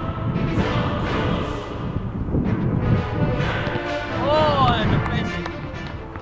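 Background music with sustained notes, playing over the footage of the football play.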